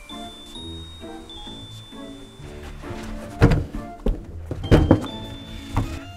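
Several heavy thuds in the second half as a large hard-shell suitcase is handled and bumped about, over background music with steady pitched notes.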